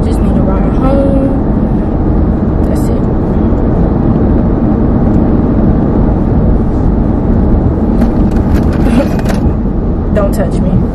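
Steady low road and engine rumble inside the cabin of a moving car, with bits of talk about a second in and again near the end.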